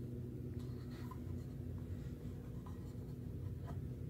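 Faint handling sounds of a laminated picture card being moved and laid down on a felt cloth: a few light scuffs and small taps over a steady low room hum.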